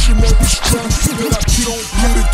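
Chopped-and-screwed hip hop track, slowed down and pitched low, with heavy bass, drums and a deep, slowed rap vocal. The bass drops out for about a second midway through.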